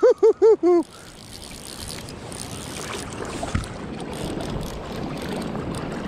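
A man laughing excitedly, a quick run of short 'ha's that ends about a second in, then a steady rush of river water and wind on the microphone that slowly grows louder.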